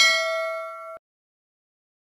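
A notification-bell 'ding' sound effect ringing and fading, with several clear pitches, then cut off suddenly about a second in.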